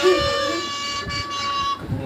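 A steady horn-like tone, one held note with overtones, that cuts off shortly before the end, with laughing voices around it.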